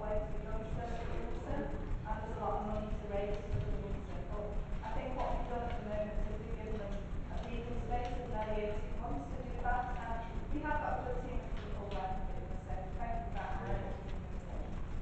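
Faint, indistinct speech over a steady low rumble.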